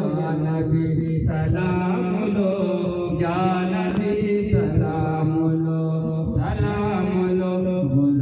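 A man chanting an Islamic devotional recitation in long, melodic held notes with gliding turns, into a handheld microphone and amplified over a loudspeaker.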